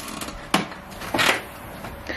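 A single sharp click about half a second in, then a brief scuffing noise.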